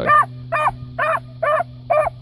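Beagle puppy barking in short, evenly spaced barks, about two a second, at a rabbit held in a wire cage trap.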